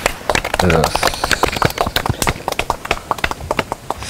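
A small group of people clapping their hands: dense, irregular sharp claps, several a second, with a few voices mixed in.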